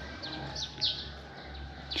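Small birds chirping, with several quick, short, downward chirps in the first second or so, over a faint steady low rumble of outdoor background noise.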